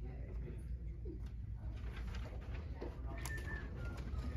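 Steady low room hum with faint rustles and small clicks of hymnbook pages being turned to the announced hymn, and a brief thin squeak about three seconds in.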